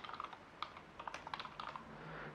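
Computer keyboard being typed on: a quick run of faint keystrokes starting about half a second in.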